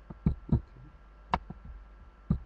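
About four irregular, short, low thumps, like handling bumps close to the microphone, over a faint steady electrical hum.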